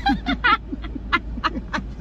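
Several people laughing hard together, a fast run of short 'ha' pulses about four or five a second.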